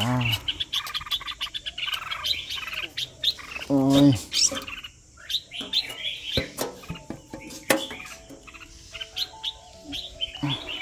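Small birds chirping rapidly and repeatedly in an aviary, many short high chirps, with a brief voice-like sound about four seconds in.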